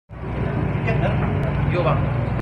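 Room noise of a crowded room: indistinct voices chattering over a steady low rumble.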